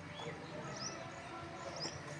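Small birds chirping, about three short high chirps in two seconds, over a steady outdoor background hum.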